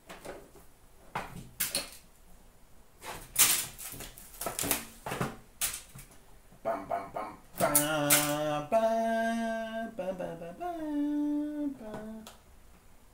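Crackling and clicking of card packs, wrappers and boxes being handled in a plastic bin, then a person humming a few held notes, the pitch dipping and rising again near the end.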